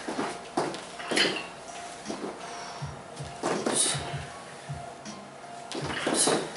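Shoulder-mounted metal weight racks clanking and rattling as several people do jumping squats, a sharp clatter every second or so, over background music.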